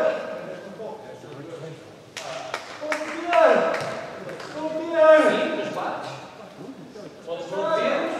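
Futsal play on an indoor court: several short, swooping squeaks of trainers on the hall floor, and a few sharp knocks of the ball about two to three seconds in.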